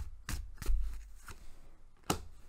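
A tarot deck being shuffled and handled: a handful of crisp card snaps spread over two seconds, with a low bump partway through.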